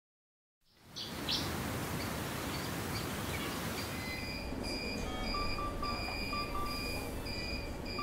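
Hospital ward ambience fading in from silence about a second in: a steady room noise with repeated short electronic beeps from medical equipment. They come in from about halfway through in a regular pattern, joined by a lower-pitched beep.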